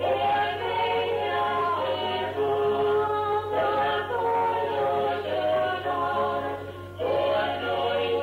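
A vocal group singing a Galician folk song in an old live recording, with a short break between phrases about seven seconds in and a steady low hum underneath.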